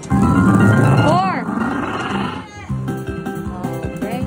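Lotus Land video slot machine's bonus-round sound: game music with a tiger-roar sound effect, a rising-then-falling call about a second in and a fainter one a little over a second later.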